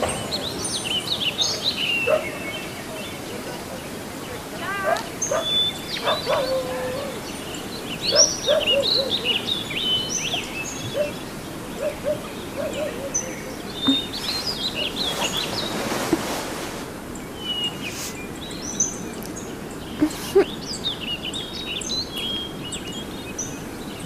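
Birds chirping: many short, quick chirps and trills scattered throughout, over a soft steady background.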